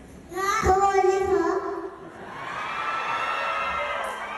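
A toddler's voice through a stage microphone: a loud drawn-out call starting about half a second in and lasting over a second, then a softer held vocal sound with crowd noise behind it.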